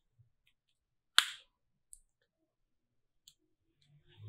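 Plastic back cover of a keypad mobile phone being pressed back onto the handset: one sharp snap about a second in, with a few fainter clicks before and after.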